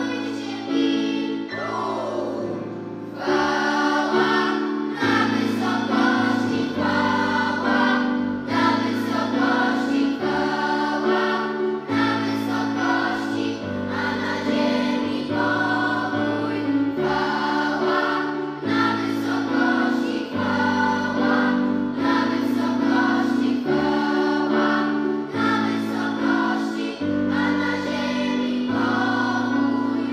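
Children's choir singing in parts with piano accompaniment; the voices come back in strongly about three seconds in after a short dip.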